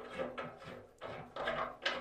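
Metal radiator tail extension being worked into a radiator valve by hand: several light clicks and knocks of the fittings.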